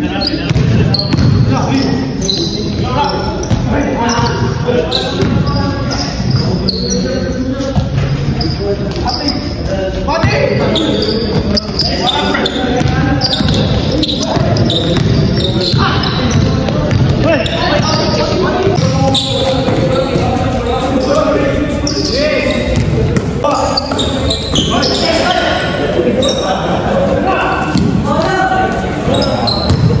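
A basketball bouncing repeatedly on an indoor court floor during a pickup game, with players' voices and calls echoing through a large gym hall.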